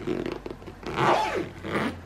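Zipper being pulled closed around the mesh divider panel of a Delsey suitcase, in a few short pulls.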